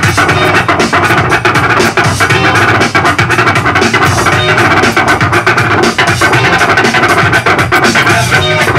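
A DJ scratching a vinyl record on a turntable, cutting short scratches back and forth over a loud playing beat.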